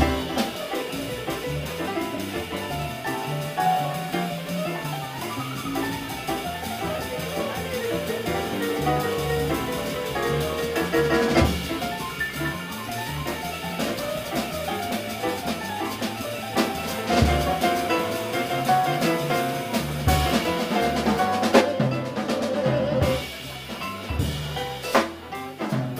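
Live jazz combo playing a swing standard: piano over walking double bass and drum kit, with sharp drum hits now and then.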